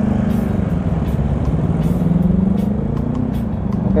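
Motorcycle engine pulling away from a stop and accelerating, its pitch climbing about halfway through, heard from the rider's seat with road and wind noise.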